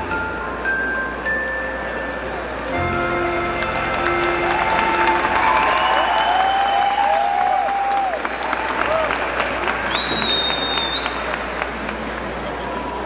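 The last held notes of a children's song's backing music. Then an audience breaks into applause with some cheering about three seconds in and keeps clapping.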